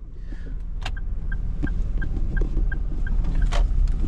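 Small car's engine pulling away, the low rumble growing louder, with a short high electronic beep from the car repeating about three times a second for around two seconds and a few light knocks in the cabin.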